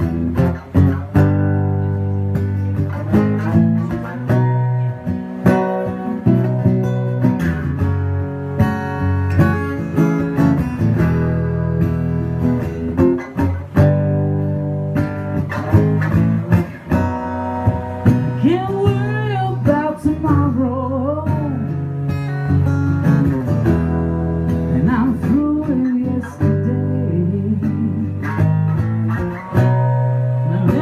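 Solo acoustic guitar played live, chords picked and strummed at a steady pace, with a woman singing over it, her voice most plain a little past the middle.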